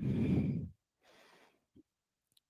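A woman exhaling hard, a breathy push lasting under a second, as she curls up into an abdominal crunch, followed by a faint breath.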